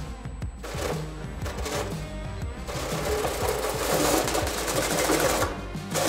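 RC crawler's electric motor and gear drivetrain whirring under load as it strains to climb a 45-degree styrofoam slope and stalls partway up, getting louder from about two and a half seconds in. Background music plays underneath.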